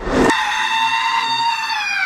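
A short crash-like burst of noise, then one long high-pitched squeal held steady that slides down in pitch near the end.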